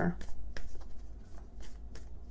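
A few soft clicks and rustles of tarot cards being handled, over a low steady hum.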